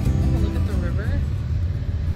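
Steady low road rumble of a vehicle driving, heard from inside the cabin, under background music and a faint voice in the first second.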